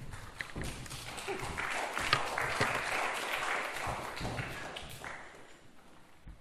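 Audience applauding, the clapping building over the first couple of seconds and dying away about five seconds in.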